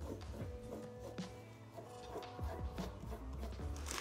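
Quiet background music with held notes that change every second or so.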